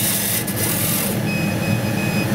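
Extraction fan and vacuum table of a Chinese laser cutter running steadily: a loud, even low hum with hiss.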